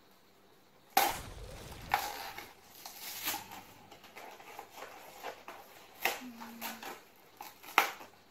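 Cardboard box of dessert mix being torn open by hand: a sharp rip of card about a second in, then crackling and rustling of the card and packaging, with a few sharp clicks.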